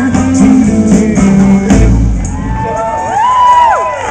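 Live blues band playing electric guitar, bass and drums, with a heavy accent about two seconds in. After it the bass and drums drop out, leaving high notes that slide up and down in pitch.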